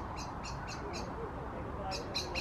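A small bird chirping repeatedly in the background, short high calls several times a second, over steady outdoor background noise.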